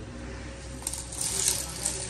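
Rustling and small clinks of a heavily embroidered and embellished bridal outfit being handled on its hanger. The sound starts about a second in.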